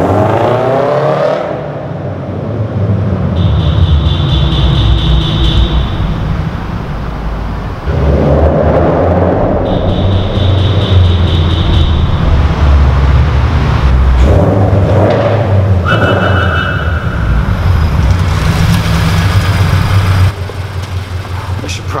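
Subaru BRZ's flat-four with aftermarket headers and Invidia N1 exhaust revving hard in several passes, swelling and easing off, echoing in a concrete parking garage. A few high-pitched steady tones of about two seconds each sound over it.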